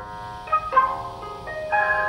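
Background music: a gentle melody of sustained, ringing notes, with a new note every half second or so.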